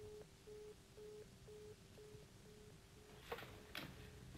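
Faint telephone busy tone from a corded handset after the other party has hung up: a single steady beep repeating about twice a second. There is a short click a little past three seconds.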